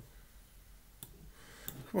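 A few sharp, quiet clicks spaced about a second apart, from clicking through files on a computer, then a man's voice starts right at the end.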